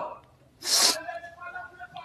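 A short, sharp breathy hiss, like a sneeze or a puff of breath close to a microphone, about half a second in, followed by faint murmuring voices.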